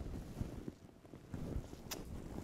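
Faint, irregular low rumble with soft thumps, and one sharp click near the end.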